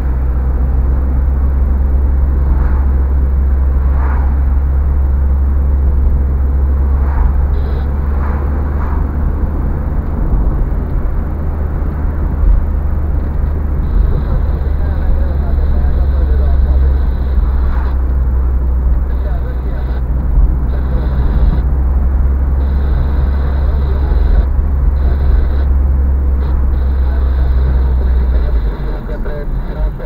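Car cabin noise while driving on a city street: a steady deep rumble of engine and tyres on asphalt, which drops noticeably near the end.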